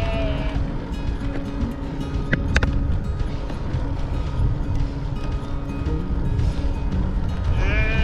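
A sheep bleating twice, once at the start and again near the end, over wind rushing on a bike-mounted camera and background music.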